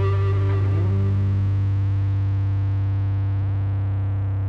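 An amplified rock band's final chord held and ringing out, distorted, over a steady low note, slowly fading. A short upward slide comes about half a second in.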